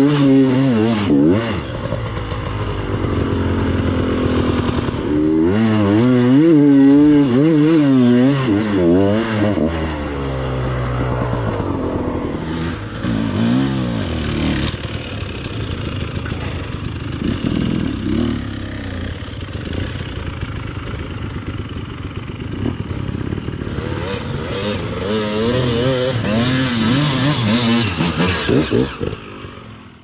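KTM enduro dirt bike engine revving under load on a steep climb, its pitch rising and falling rapidly and repeatedly as the throttle is worked and the rear wheel fights for grip. The sound fades out at the very end.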